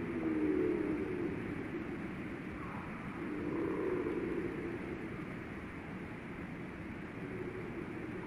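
Steady low background rumble, with a low wavering hum that swells at the start and again about four seconds in.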